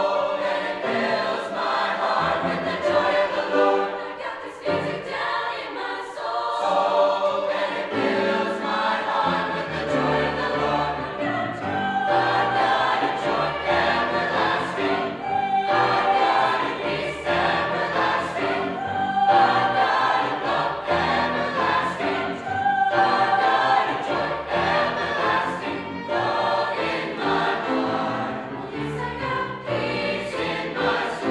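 Mixed high school choir singing in parts, holding long notes throughout.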